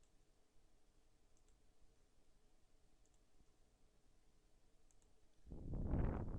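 Faint computer mouse clicks, a few seconds apart, during software editing. A much louder sound lasting over a second comes in near the end.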